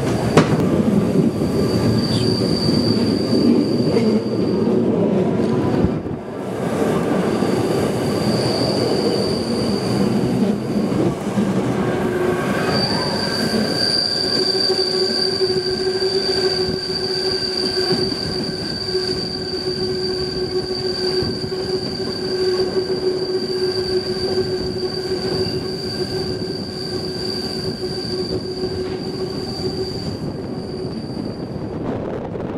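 Rhaetian Railway Bernina line train running, heard from a carriage window, with its wheels squealing on a curve. The high, steady squeal comes in short spells at first and then holds without a break from about halfway through, over the rumble of the running gear.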